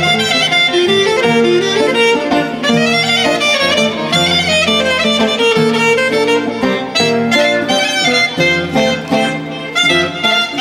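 Live Greek folk band music, a clarinet leading with a winding, ornamented melody over the band's accompaniment.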